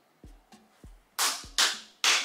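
A quiet song beat of low, pitch-dropping kick drum thumps. About a second in come two loud, sharp hand claps close together.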